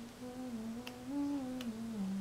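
A person humming a slow tune, the pitch moving in held steps that rise in the middle and fall back. Two light clicks sound partway through.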